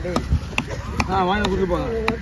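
Large knife chopping a red snapper fillet into pieces on a wooden chopping block: a series of sharp chops, about two a second.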